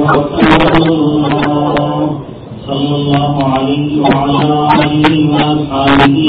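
A man reciting Quranic verses in a melodic chant, holding long notes on a steady pitch, with a brief pause about two seconds in.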